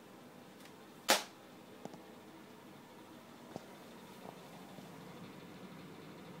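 A slice of buttered toast dropping off a worktop edge onto carpet: one short, sharp sound about a second in, followed by a few faint ticks.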